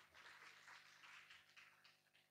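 Near silence, with faint, ragged applause from a lecture audience.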